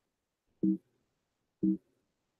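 Two short electronic beeps about a second apart, each a brief low two-note tone.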